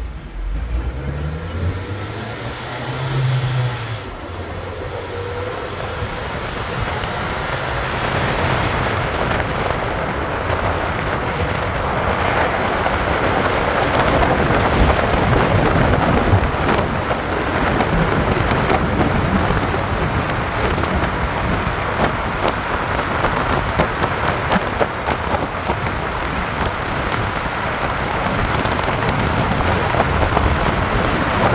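Road and wind noise inside a moving car. A low engine note rises in the first few seconds as the car pulls away, then a steady rush of tyres and wind grows louder over about the first ten seconds as it gathers speed, and holds.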